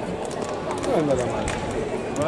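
A voice calling out briefly, about a second in, over the steady hubbub of a fencing hall.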